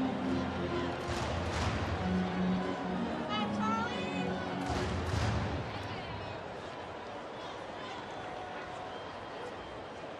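Ballpark crowd murmur with stadium PA music, a few held notes, playing over it; the music stops about five and a half seconds in, leaving steady crowd noise.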